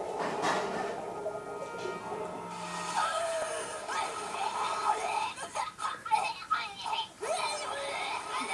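Cartoon soundtrack playing from a television: background music, then a cartoon character's voice sounds from about three seconds in, with a run of short sharp sounds around six seconds in.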